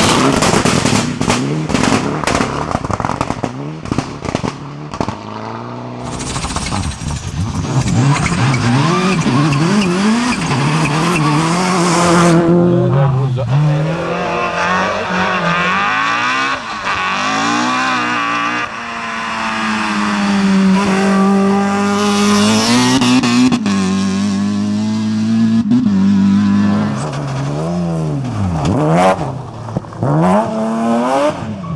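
Rally car engines at full throttle, one car after another, revving up and dropping back through the gear changes. Dense sharp crackles and clatter come in the first few seconds.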